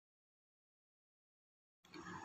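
Silence: the sound track drops out completely. Faint room noise returns just before the end.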